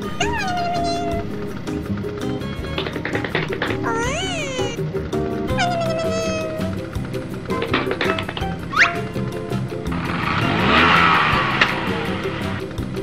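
Cheerful background music with several short, high-pitched squeaky cartoon exclamations that slide in pitch, some falling and some rising then falling. A short noisy whoosh swells up near the end.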